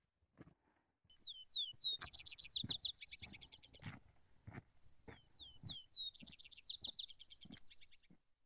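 A small songbird sings twice. Each song is about three seconds long: a few down-slurred whistled notes lead into a fast, high trill. Footsteps on a rocky trail sound underneath, about one every two-thirds of a second.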